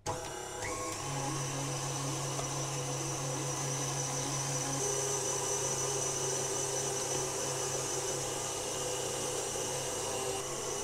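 Electric meat grinder switched on and running, its motor whining up to speed in the first second, then holding a steady whine while cooked beef trimmings, cartilage and tendons are fed through the fine plate.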